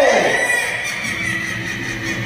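A man's voice through a stage PA system draws out a final syllable that slides down in pitch right at the start, then trails into a quieter stretch of hall sound with a faint steady high tone.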